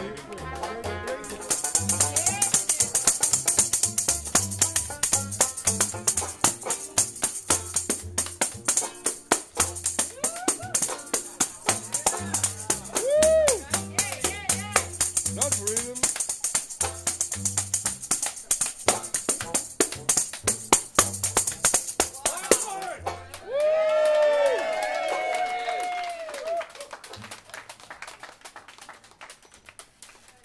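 A tambourine shaken in a fast, steady jingle over live street-band music with a low, repeating bass line. The tambourine stops about three quarters of the way in, and the music is quieter near the end.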